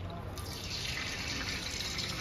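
Liquid poured from a small steel bowl into a large aluminium pot of water, a steady splashing pour that grows brighter about half a second in.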